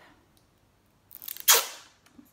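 Sellotape being pulled off the roll: one short, loud ripping peel about a second and a half in.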